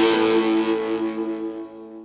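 Last chord of a rock song played on distorted electric guitar, ringing out and fading away over about two seconds.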